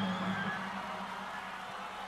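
A pause in a live electric guitar solo: the last low note rings on and fades over about the first half second, leaving only faint background noise of the hall.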